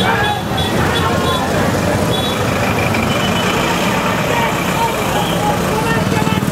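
Engines of an auto-rickshaw, motorcycles and a truck passing close on a busy road, over the shouting of a protest crowd. A few short high beeps sound in the first half.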